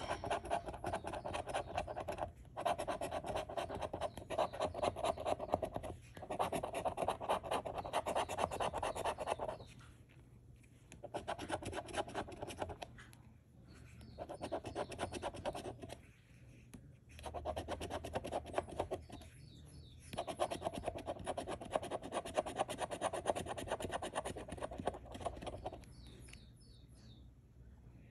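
A coin scratching the coating off a scratch-off lottery ticket in quick back-and-forth strokes. It comes in several bursts broken by short pauses and dies away near the end.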